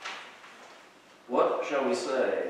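A brief rustle right at the start that fades quickly, then a man's voice begins speaking just over a second in.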